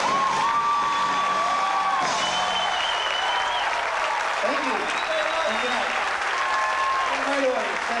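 Audience applauding and cheering at the end of a live rock band's song, with voices shouting over the clapping.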